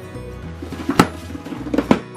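A chain of books toppling like dominoes onto a wooden floor: a rapid clatter of slaps and knocks, with two sharper hits about a second in and near the end. Background music plays under it.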